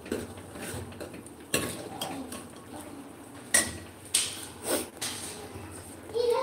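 Steel ladle clinking against the rim and sides of a steel cooking pot while food is stirred: a few sharp metallic knocks with a short ring, about four over the stretch.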